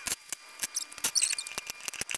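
A run of sharp, irregular clicks, several a second: coins being fed one at a time through the slot of a digital coin-counting jar's lid and dropping into the plastic jar.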